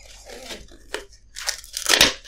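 A paper tissue crinkling and rustling right at the microphone, mixed with breathy, stifled laughter. The crinkling is loudest in the last half second.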